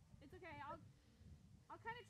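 Faint human voice: a short vocal sound with a wavering pitch about a quarter of a second in, and another starting near the end.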